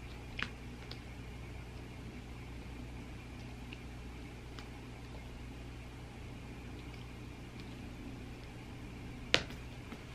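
Quiet room tone with a steady low hum, a few faint ticks, and one sharp click about nine seconds in, the loudest sound here.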